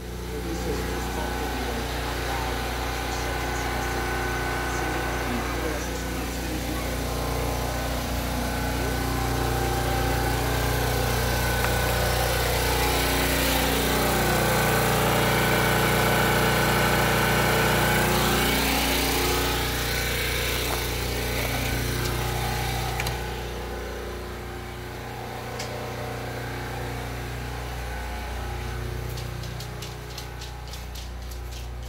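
Predator 4375 portable gasoline generator running steadily under load. It grows louder as it is approached, peaking about halfway through, then falls back.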